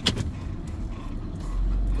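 Minivan engine and road rumble from inside the cabin, with a sharp click right at the start. The low rumble grows louder about one and a half seconds in as the van pulls away.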